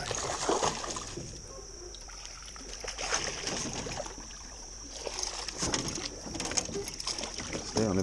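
A hooked bass splashing and thrashing at the surface beside an aluminum boat during the fight, with scattered splashes and knocks.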